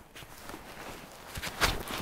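Soft rustling and a few footfalls in dry grass as a man moves in a loaded rucksack, its fabric and straps shifting. Faint throughout, with a few sharper knocks in the second half.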